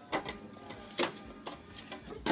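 Plastic food containers being set into a refrigerator's shelves, giving several short knocks and clicks.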